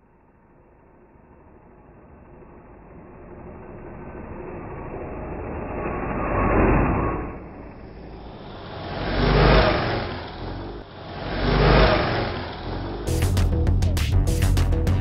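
Trailer sound design: a noise swell building slowly from silence, then three deep whooshing sweeps, each rising and falling. About a second before the end, music with a sharp, busy beat comes in.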